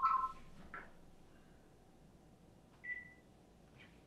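An electronic beep of two steady pitches sounding together cuts off just after the start. Then only faint room tone, broken by one short, higher beep about three seconds in.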